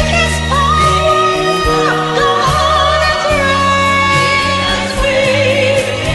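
A song with a singing voice holding long, wavering notes over an instrumental backing with steady chords and bass.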